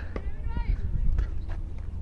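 Faint, distant voices of players calling out across an open cricket ground, over a steady low rumble, with a few light clicks.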